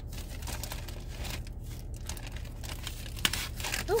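Plastic packaging crinkling and rustling as it is handled and rummaged through, with a short sharp click a little over three seconds in.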